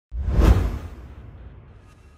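Whoosh sound effect for an animated logo intro. It swells quickly to a peak about half a second in, heavy in the low end, then fades away over the next second and a half.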